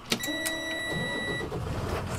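Ignition key clicking in a school bus's switch, then a steady electronic dashboard tone for about a second and a half. A low rumble from the diesel engine rises under it about a second in.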